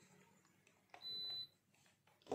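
A single short, high-pitched electronic beep, one steady tone lasting about half a second, about a second in; otherwise near silence.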